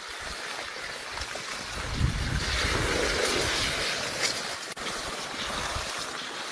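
Wind buffeting a phone's microphone: a steady hiss with irregular low rumbling gusts, growing louder about two seconds in, with a single brief click near the end.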